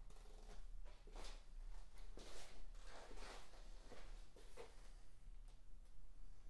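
A run of faint, short scraping or rustling noises, about six of them over four seconds, over a steady low mains hum.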